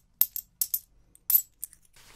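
Small Korean 10-won coins dropped one at a time from the fingers into a palm, about seven bright metallic clinks.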